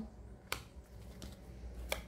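Tarot cards being handled: one sharp click about half a second in and a fainter click near the end.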